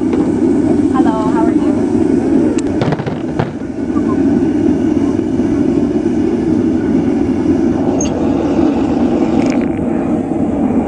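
Gas forge burner running with a steady, low rushing noise, with a few light clicks about three seconds in.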